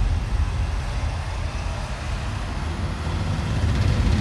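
A steady low rumble with a faint hiss above it, with no clear beat or tune.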